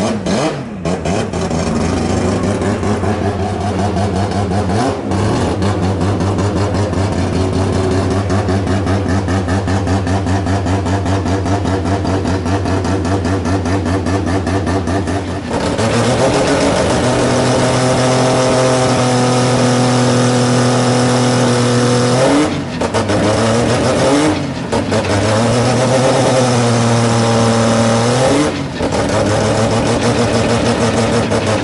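Red Bull Mazda MX-5 drift car's four-rotor rotary engine idling steadily. About halfway it settles into a louder, slightly higher idle, and near the end the revs swing briefly three times.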